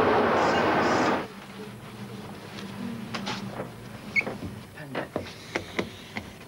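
Loud railway platform noise beside a train, cut off abruptly about a second in. Then quiet room tone with short scratches and squeaks of a marker pen writing on a whiteboard.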